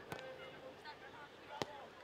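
Two sharp thuds of a football being kicked, the second louder, about a second and a half apart, over faint distant shouts from players on the pitch.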